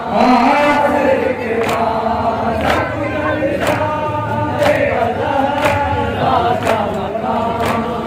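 A group of men chanting a nauha (mourning lament) in unison, with a sharp slap of chest-beating (matam) landing about once a second.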